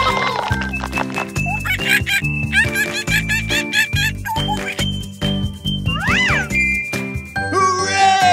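Upbeat children's background music with tinkling chimes and a steady bass line. About six seconds in, a quick sliding tone rises and falls.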